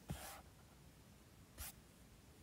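Very faint handling of a paper book page, with one short, soft rustle about a second and a half in; otherwise near silence.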